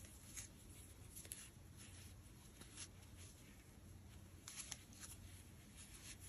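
Near silence, with a few faint, brief rustles of bulky cotton yarn and a crochet hook being worked by hand, a small cluster of them about two-thirds of the way through.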